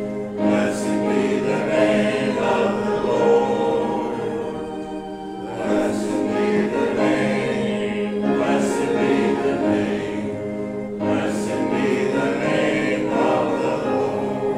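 A choir or congregation singing a hymn, in long phrases with short breaths between them.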